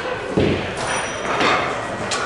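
Two dull thuds, one about half a second in and another about a second later.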